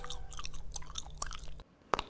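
A person chewing gum: a string of small wet clicks and smacks, then a sharp snap near the end.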